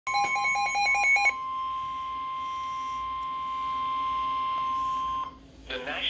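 NOAA Weather Radio alert tones from a Midland weather alert radio's speaker: a rapid burst of electronic beeps for about a second, then the steady 1050 Hz warning alarm tone held for about four seconds before cutting off. The tone signals an incoming tornado warning broadcast.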